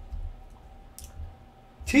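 A single short click about halfway through, over a low steady room hum, with speech starting just at the end.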